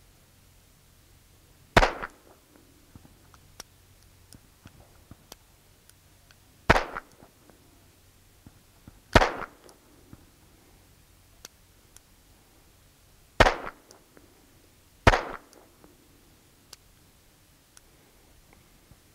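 Small Belgian .22 Short pocket revolver fired double action: five sharp shots at uneven intervals, the longest gap about five seconds, with faint clicks between them. The string is broken by misfires whose cause is not known.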